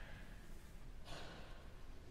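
Faint concert-hall ambience in the pause between two movements of an orchestral work, with a short breathy sound about a second in.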